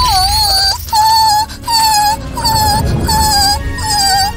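A high-pitched, squeaky cartoon voice sings a run of short, similar notes, about one every three-quarters of a second, over low background music.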